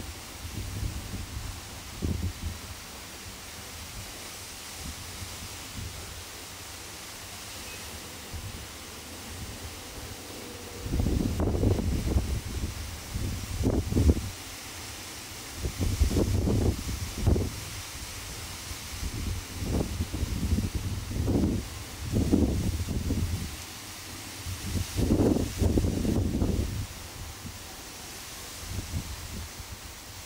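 Wind buffeting the microphone in irregular gusts, low rumbling bursts over a steady outdoor hiss, mostly in the second half.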